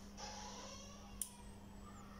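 Quiet room tone with a low steady hum and one faint, short click a little past a second in.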